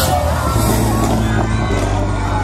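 Electronic music with a steady heavy bass line, with crowd chatter and cheering underneath.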